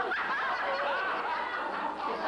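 Audience laughing steadily after a punchline, many voices together.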